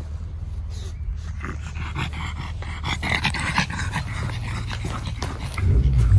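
A pug panting hard, with rough snuffling breaths that are loudest in the middle; typical of a flat-faced dog blowing off heat. A louder low rumble comes at the very end.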